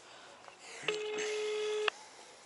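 Phone ringback tone playing through a smartphone's loudspeaker: one steady low beep about a second long, which signals that the dialled number is ringing and the call has not yet been answered.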